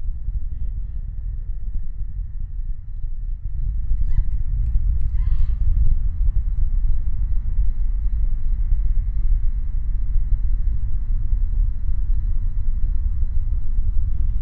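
Steady low rumble of the Falcon 9 first stage's nine Merlin 1C engines firing at full power during ascent, growing a little louder about three and a half seconds in.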